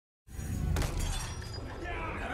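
A crash of shattering glass, with a sharp impact and tinkling shards over a low rumble, starting suddenly about a quarter second in.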